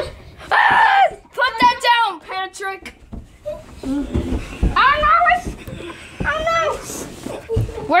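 Children's voices shouting and calling out in play, with a few dull thumps near the middle and near the end.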